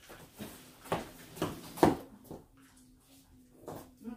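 A handful of dull thumps and shuffles as a large play mat is handled and set down on the floor. The loudest thump comes about halfway through, and a last one near the end.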